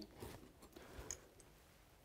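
Near silence, with a few faint clicks and ticks from handling a pistol and its red dot sight.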